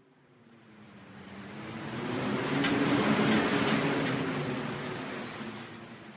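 Logo-intro sound effect: a hissing whoosh that swells to a peak about three seconds in and then fades away, over a low drone, with a few crackles near the peak.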